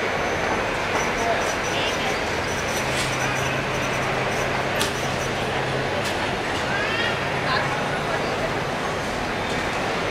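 Steady, dense rumble of a Boeing 737-800's CFM56 turbofan engines at taxi power as the airliner rolls past, with faint voices mixed in.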